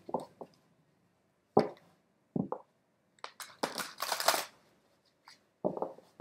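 A deck of astrology cards being handled and shuffled in the hands: a few separate taps and slaps of cards, then a denser run of shuffling about three to four and a half seconds in, with more taps near the end.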